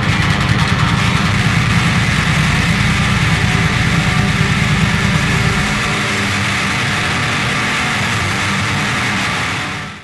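Motorcycle engine idling steadily. Its deep part drops away about six seconds in, and the sound fades out at the very end.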